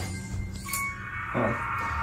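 A motion-activated music box sounding a few high, ringing notes that start one after another, set off by motion in front of it, over a low steady drone.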